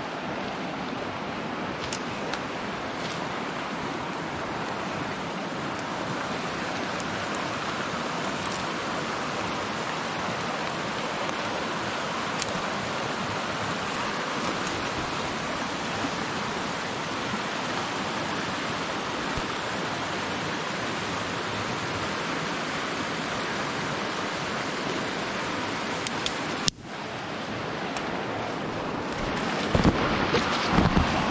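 Steady rush of flowing river water, with a brief cut-out about 27 seconds in and a few crackles near the end.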